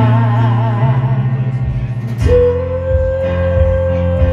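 Live solo performance: a woman singing with vibrato over her own grand piano accompaniment. Her wavering note ends about a second in, piano chords carry on, and a long steady note comes in just after two seconds.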